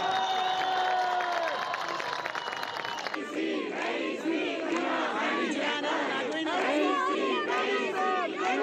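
A protest crowd shouting slogans. A long shout is held for about the first three seconds, then it changes abruptly to a crowd chanting in rhythm, with voices rising and falling together.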